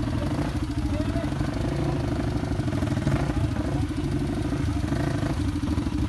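Off-road dirt bike engine running steadily at low revs, near idle, with no revving.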